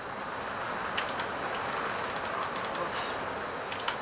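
Hot glue gun being squeezed into a plastic cap, its trigger feed giving a run of light clicks, a few sharper ones scattered through, over a steady hiss.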